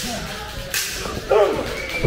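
A single sharp slap of an open hand striking bare skin, a wrestling chop, about three quarters of a second in, followed about half a second later by a short shouted voice.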